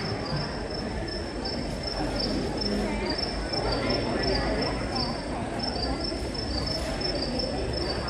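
Crickets chirping: a steady train of short, high chirps alternating between two pitches, several a second, over a low murmur from the hall.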